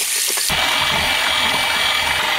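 Electric hand mixer running steadily, its twin beaters whisking sodium alginate powder into a glass bowl of water; the sound fills out lower down from about half a second in.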